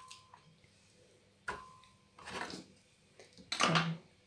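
Pieces of fruit dropped one at a time into an empty glass blender jar: three soft knocks about a second apart, the first sharper, with a brief ringing of the glass.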